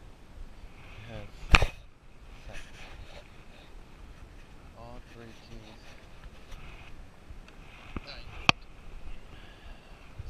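Sharp clicks and knocks from fishing gear being handled close to the microphone: a loud one about one and a half seconds in, then two more half a second apart near the end.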